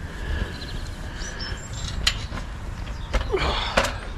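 Rumble and knocks of an action camera being handled and carried around outdoors, with wind on the microphone and a few faint high chirps in the background.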